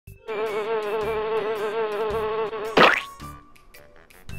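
Sound effect of a housefly buzzing steadily, its pitch wavering slightly, cut off about three seconds in by one sharp, loud swatter splat.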